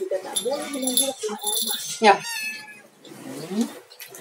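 A kitten meowing several times while it is being bathed, the loudest call about two seconds in.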